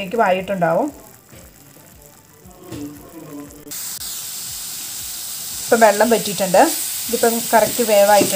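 Grated mushroom mixture sizzling in a hot pan as it is stir-fried with a slotted metal spatula; a steady frying hiss comes in suddenly about four seconds in and continues. A person talks at the start and again from about six seconds in.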